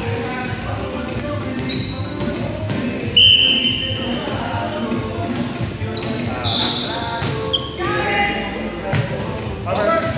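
Echoing gym during indoor volleyball: voices of players across the hall, with volleyballs being hit and bouncing on the hardwood floor. A loud high steady tone sounds for just under a second about three seconds in, and shorter high tones follow between six and eight seconds.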